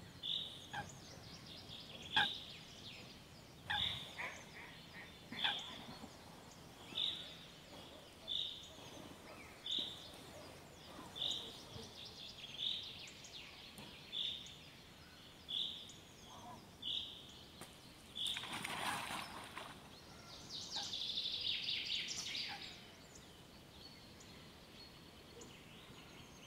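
Outdoor springtime birdsong, faint: one bird repeats a short, high call about every second and a half. Near the end a louder, rougher call comes in, followed by a few seconds of rapid trilling.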